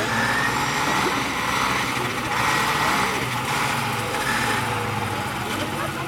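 Small engine of a lure-coursing machine running steadily as it pulls the lure, with faint voices in the background.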